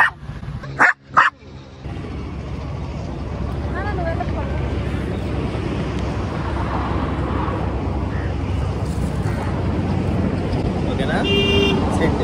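Shih Tzu puppy giving a short bark near the end, over a steady low rumble that builds slowly. There are two sharp knocks about a second in.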